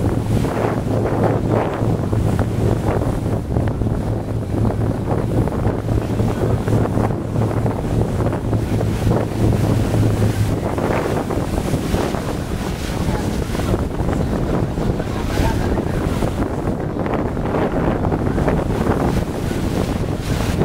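Wind buffeting the microphone over the splash and wash of choppy sea around a small open boat under way. A steady low hum of the boat's motor runs underneath and drops away about halfway through.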